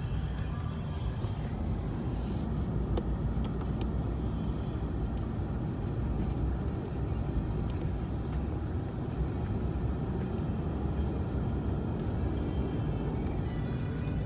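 Steady low rumble of a truck driving slowly along a dirt track, heard from inside the cab, with music playing over it.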